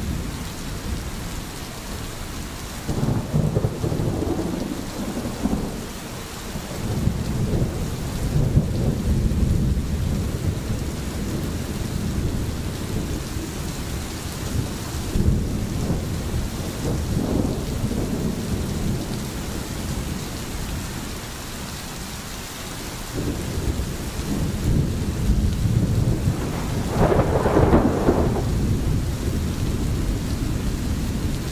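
Steady rain with distant thunder rumbling in several long rolls, the loudest rumble near the end.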